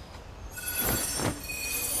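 A shimmering, high-pitched magic sound effect: many bright, chime-like tones swell in about half a second in over a soft sweeping whoosh, marking a healing spell being cast.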